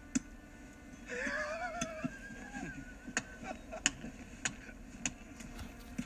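Sharp ticks, a few scattered at first and then evenly about one every two-thirds of a second, with a short wavering tone about a second in.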